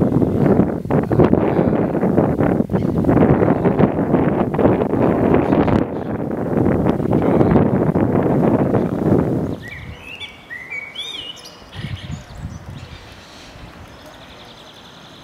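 Wind buffeting the microphone in gusts, then cutting off abruptly about two-thirds of the way through. A few short, rising bird chirps follow over a quieter outdoor background.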